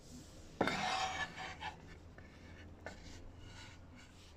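A kitchen knife knocks onto a wooden cutting board and scrapes across it, pushing chopped spring onion along. The loudest sound is a knock and scrape about half a second in, followed by a few fainter scrapes.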